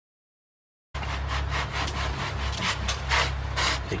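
Silence for about the first second, then a dog digging in dirt: quick, repeated scratching and scraping of paws in soil over a steady low rumble.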